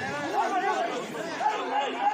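Chatter of several voices at once, overlapping talk from people at a volleyball court, with no single voice standing out.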